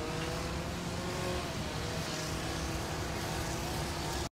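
A car driving, heard from inside the cabin: a steady engine hum and road rumble, with faint tones drifting slowly in pitch.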